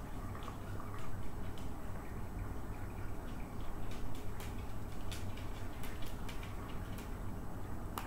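Faint, scattered light clicks and taps of hands handling papers, over a steady low hum.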